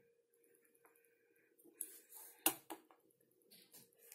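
Quiet handling of a plastic toy playset, with faint rustles and one sharp plastic click about two and a half seconds in, over a faint steady hum.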